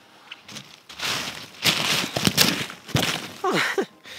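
Dry fallen leaves and forest litter rustling and crunching in bursts as they are dug through and pushed aside by hand to uncover a buried box, starting about a second in. A short falling voice sound, like a grunt, comes near the end.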